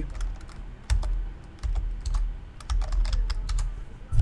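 Typing on a computer keyboard: scattered single keystrokes, then a quicker run of key clicks about three seconds in, over a faint low hum.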